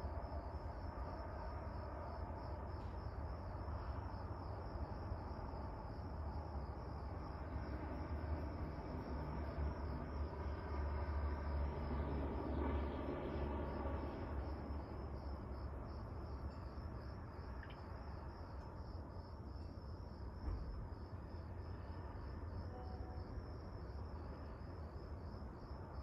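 Crickets chirping in a steady high, pulsing trill over a low, continuous background rumble.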